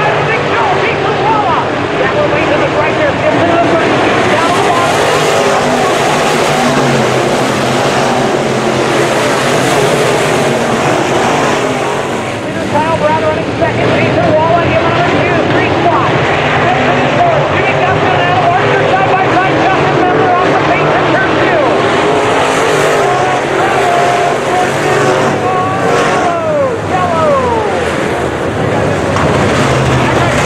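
A pack of dirt-track Modified race cars with V8 engines running hard around the track, loud and continuous, their pitch rising and falling as they lift and accelerate through the turns. Near the end one engine's pitch drops sharply as a car passes close.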